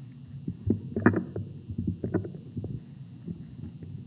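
Microphone handling noise from a hand gripping and repositioning a mic on a boom stand: irregular low thumps and rubbing bumps, the loudest about a second in and again just after two seconds.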